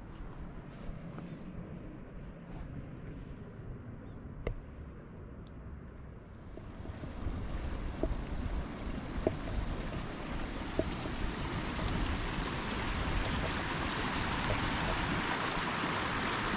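Low wind rumble on the microphone, then from about seven seconds in the rush of a shallow mountain stream running over rocks comes in and grows steadily louder. A few light ticks sound along the way.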